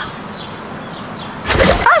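Faint bird chirps. About one and a half seconds in, a loud noisy burst comes, then a woman's sharp exclamation of "Ah!" near the end.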